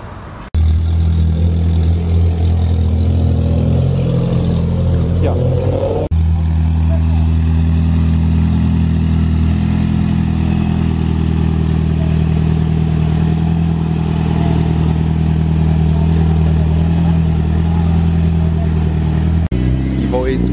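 Turbocharged Mitsubishi four-cylinder car engines running steadily at low revs while the cars roll slowly. The sound starts abruptly about half a second in and changes sharply at about six seconds and again near the end.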